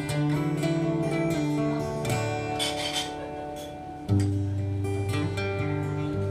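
Solo acoustic guitar playing chords and sustained bass notes, with a loud low chord struck about four seconds in after a quieter stretch.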